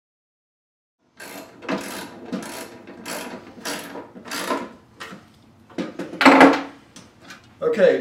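Hand screwdriver turning screws into the fixture's metal housing, a rasping click with each turn, coming about every half second and starting about a second in. A few scattered clicks and one louder knock follow before a man starts speaking near the end.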